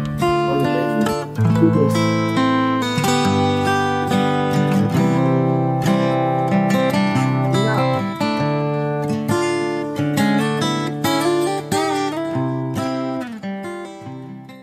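Acoustic guitar played fingerstyle: a plucked melody over a moving bass line, getting quieter in the last second or so.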